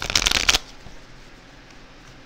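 A deck of tarot cards being shuffled, a quick rapid rustle that stops about half a second in.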